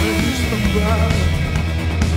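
Loud live punk rock band playing, heavy bass and drums under guitar, with one pitch sliding down through the first second.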